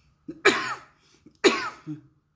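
A woman coughs twice, two sharp coughs about a second apart; she is ill with COVID-19, confirmed by a scan.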